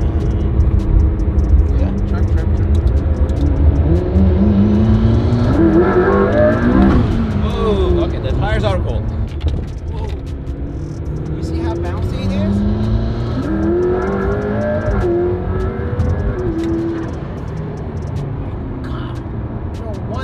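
McLaren P1's twin-turbo V8 accelerating hard, heard from inside the cabin: the engine note climbs steeply in pitch twice, each pull cut off by a gear change, over a steady low drone of engine and road.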